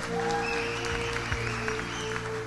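Audience clapping over held musical tones and a low steady hum.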